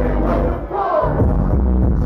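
Loud live hip hop played over a club PA, heavy bass under a rapped vocal, with the crowd shouting along. The bass drops out briefly a little after halfway.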